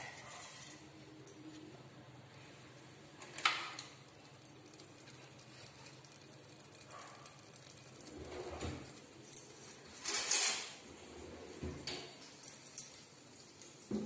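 A mostly quiet kitchen, broken by a few light knocks and clatters of kitchenware around a steel pressure cooker: one about three seconds in, and a cluster between eight and twelve seconds in, the sharpest about ten seconds in.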